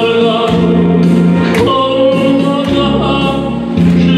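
A man singing a Korean popular song into a microphone over instrumental accompaniment with a bass line and a steady beat.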